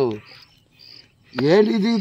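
A man's voice at the very start and again from about halfway on, over insects chirping in short, high-pitched bursts that repeat about every half second.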